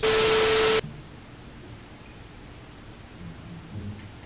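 TV-static transition sound effect: a burst of loud hiss with a steady tone running under it, cut off suddenly after less than a second, followed by quiet room tone.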